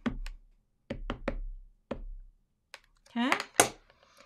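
Ink pad dabbed repeatedly onto a clear stamp in a stamp-positioning tool: a series of short, light knocks, three in quick succession about a second in, then two more spaced out.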